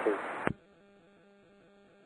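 The end of a radio call, with the last word heard over the aircraft radio/intercom, cut off by a click about half a second in. Near silence follows.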